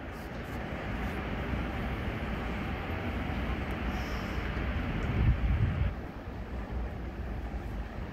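Low, steady background noise of a very large stadium crowd holding a moment of silence, with no voices standing out. A brief low rumble comes about five seconds in.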